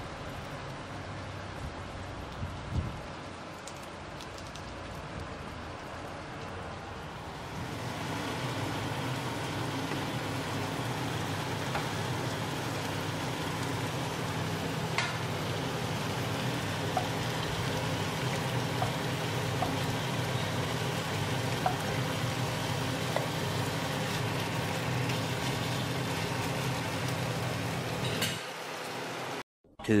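Steady rain falling on a wet car park. After about seven seconds it gives way to a louder, steady sizzle of meat steaks frying in oil in a frying pan, with a few light clicks.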